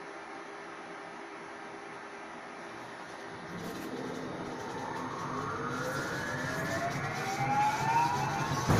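Electric tram heard from inside the passenger car: a steady low running hum, then about halfway through the traction motors' whine rises in pitch in several stacked tones as the tram accelerates, growing louder toward the end.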